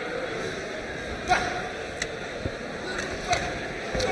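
Indoor boxing-hall crowd murmur, steady and moderate. Three brief sharp sounds stand out, at about a second and a quarter, two seconds and just past three seconds.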